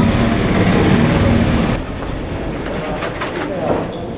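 Water bottling line running: a loud, steady mechanical noise with a low hum and rattling, which drops in level a little under two seconds in and goes on more quietly with scattered clicks.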